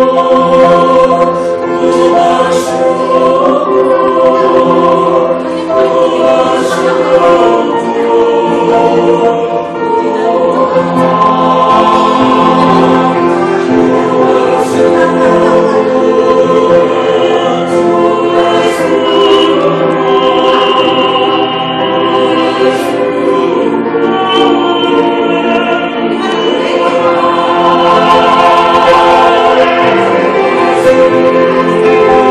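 Mixed choir of men's and women's voices singing a Christian song in parts, with piano accompaniment, holding long sustained chords.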